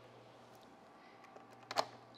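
Quiet room tone, with one brief soft burst of noise near the end.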